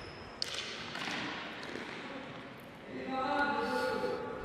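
Echoing sports-hall noise with one sharp knock about half a second in, then a held shout from the hall starting about three seconds in.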